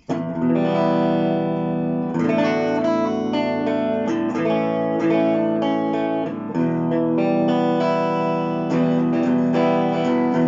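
Epiphone Les Paul Prophecy electric guitar played on a clean tone through an amp: chords struck and left ringing, a new chord about every two seconds.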